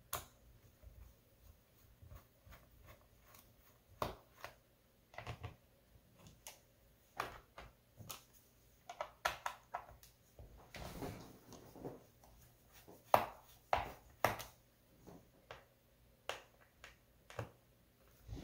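Small screwdriver loosening the base-cover screws on a Lenovo ThinkPad T450s: faint, irregular clicks and taps of the driver and fingers on the plastic case, with a brief rustle about two-thirds of the way in.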